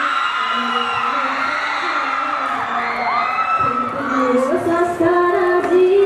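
Singing with music, heard over large loudspeakers: long held notes that slide up and down in pitch, with a change of phrase about four seconds in.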